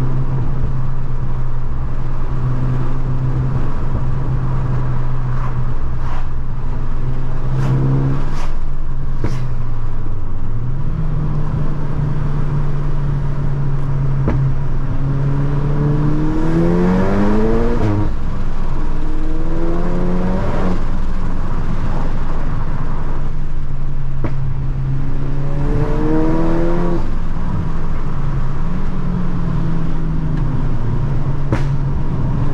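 Tuned VW Golf GTI Mk7's turbocharged four-cylinder engine heard from inside the car, running at steady revs, then pulling hard twice, the pitch rising steeply and dropping sharply at a gear change just past halfway and again near the end. A few short sharp clicks come early on the steady stretch.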